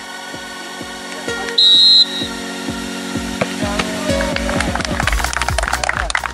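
A referee's whistle blows one short, loud, shrill blast about a second and a half in, signalling the ceremonial kickoff. Near the end, hand clapping starts.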